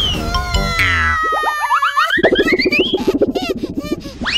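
Cartoon soundtrack music with comic sound effects: a sliding tone that falls in pitch, then rising glides, and a fast wobbling warble in the second half.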